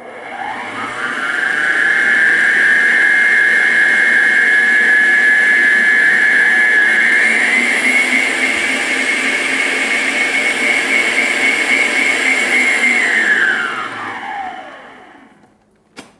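Electric stand mixer beating cake batter with a wire whisk in a stainless steel bowl: the motor whine rises as it starts, steps up in pitch about seven seconds in as the speed dial is turned up, then winds down and stops as it is switched off near the end.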